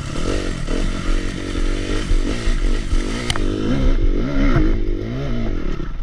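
Dirt bike engine on a steep hill climb, its revs rising and falling over and over as the throttle and clutch are worked, with brush scraping and clattering against the bike. There is a sharp click about halfway through.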